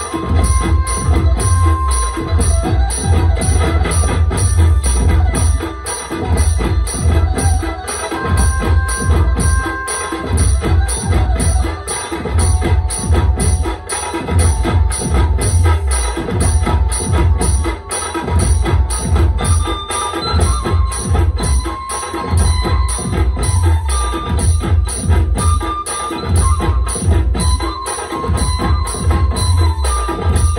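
DJ dhumal drum pattern played live on a mobile Octopad drum-pad app: fast, steady pad hits with heavy bass drum, over sustained melody notes.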